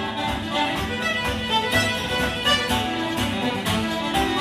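Irish traditional band playing a quick tune: fiddle carrying the melody over guitar accompaniment and a steady beat.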